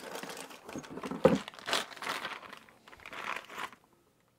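Clear plastic bag of RC shock parts crinkling as it is handled and opened, loudest about a second in, then thinning out.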